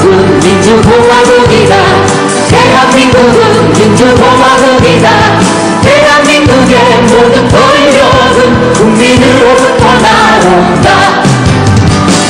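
A woman singing lead into a microphone over a live band with acoustic guitars and keyboard, amplified through a PA; the singing and backing run continuously at a steady, loud level.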